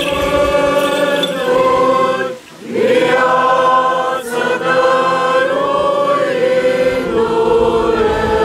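Choir singing a Romanian Orthodox Easter chant in long held notes, with a short pause between phrases about two and a half seconds in.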